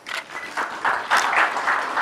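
Audience applauding, the clapping swelling about half a second in and growing louder.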